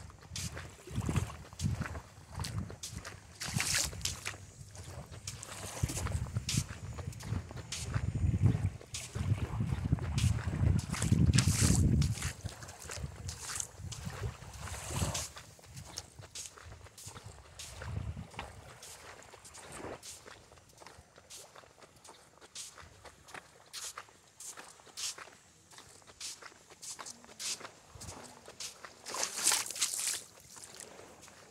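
Footsteps on beach sand, a short crunch with each step, while walking along the water's edge. Wind buffets the microphone with a low rumble from about six to twelve seconds in.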